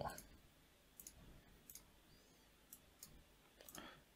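A few faint computer mouse clicks at irregular intervals over near silence.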